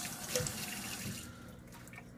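Kitchen faucet running water into a stainless steel sink, stopping about a second and a half in.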